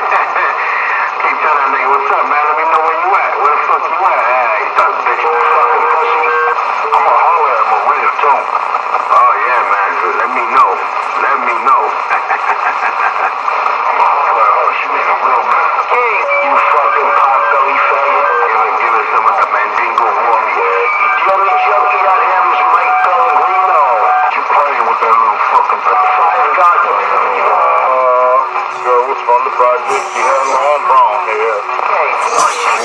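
Several voices talking over one another through a thin, radio-like channel, too jumbled to make out words. Short steady tones at different pitches break in now and then.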